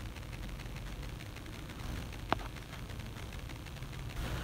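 Quiet room tone with a steady low hum, broken by a single short click a little over two seconds in.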